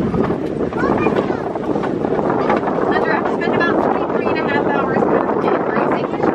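Safari ride truck running along the rough track: a steady rumble of engine and road noise, with indistinct voices over it from about three seconds in.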